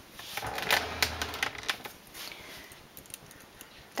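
Light metallic clicks and taps of a knitting machine's latch needles and a multi-prong stitch transfer tool as stitches are lifted and moved for a lace pattern, most of them in the first two seconds.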